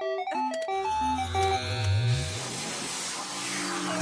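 A phone's electronic ringtone playing simple beeping notes for about the first second, then a rising whoosh over a low rumble that swells and fades out near the end.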